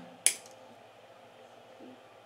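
Small wire cutters snipping once through the tinned end of an Ethernet cable conductor: a single sharp click about a quarter second in.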